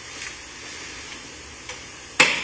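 Steady hiss of courtroom room tone and microphone noise, with a couple of faint ticks, one near the start and one near the end.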